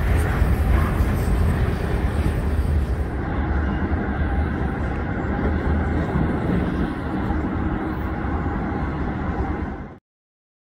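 Freight train cars rolling past on the rails: a steady low rumble with a rushing noise above it. The sound turns duller about three seconds in and fades out just before the end.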